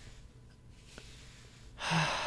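A man's quiet breathing close to the microphone, then about two seconds in a loud breathy sigh that runs into a contented hummed 'mm'.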